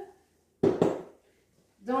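A single short clunk of a ceramic bowl being handled, about half a second in, dying away within half a second.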